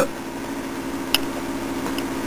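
Steady low machine hum with a single sharp click a little over a second in.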